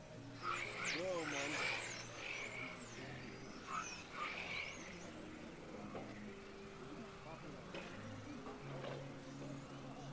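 Electric 1/10-scale RC touring cars racing past, their motors whining in quick rising and falling sweeps as they accelerate and brake through the corners, mostly in the first half. Faint music plays underneath.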